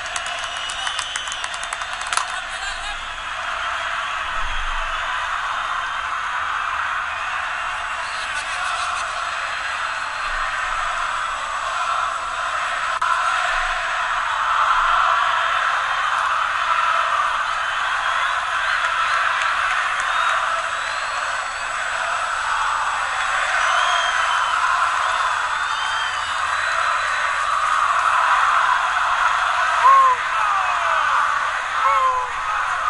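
Football stadium crowd singing and cheering, a steady wall of many voices that swells a little in the second half, thin and without bass as on an old TV broadcast.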